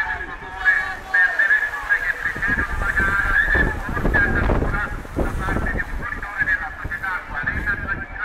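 A large pack of racing bicycles passing close by at speed: a rush of tyres and air that swells in the middle as the bunch goes past, with a constant chatter of short, high squeals over it.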